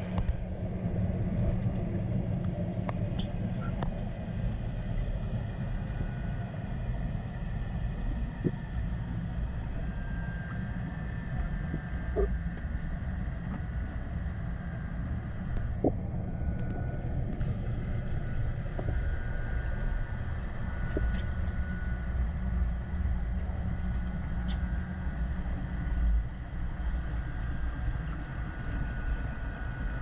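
Underwater ambience in a deep diving pool heard through a submerged camera: a steady low rumble with faint steady tones above it and a few small sharp clicks scattered through.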